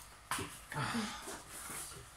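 A man's strained grunts and breathy exhalations as he forces the stuck lid of a small mustard jar.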